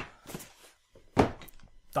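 A single dull thunk about a second in, with a couple of faint knocks around it: the cardboard game box being set down on a wooden table.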